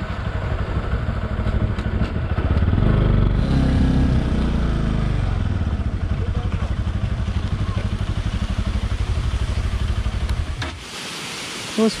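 Motorcycle engine running at low speed, rising for a couple of seconds early on and then settling back to a steady chug. Near the end it cuts off abruptly, giving way to the steady rush of water pouring into a bell-mouth spillway.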